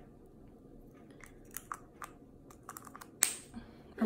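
Faint scattered clicks and light plastic rattles of lipstick tubes being handled, with one sharper click a little after three seconds in.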